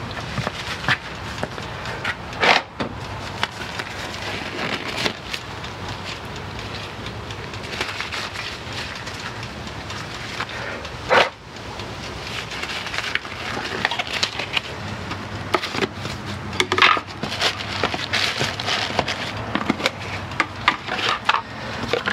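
Thin nitrile gloves crinkling and rustling as they are pulled on by hand, with a few sharp clicks and knocks from handling things on the bench.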